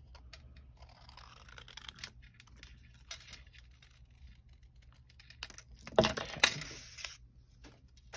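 Small craft scissors snipping stamped cardstock, a run of faint, quick clicks and snips as the blades close on the paper. A couple of louder knocks come about six seconds in.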